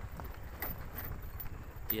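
Motorcycle riding slowly over a rough, unpaved road: low running noise with a few faint, irregular knocks and rattles from the bumps.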